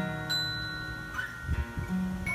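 Glockenspiel notes struck with mallets and left ringing, over a strummed Gibson J-45 acoustic guitar.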